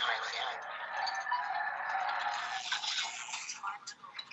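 Coffee pouring into a cup, heard as the soundtrack of a demo clip played through a Bose TV soundbar: a steady splashing pour with little bass, easing off near the end.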